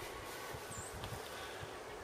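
Faint, steady outdoor background noise with no distinct sound events.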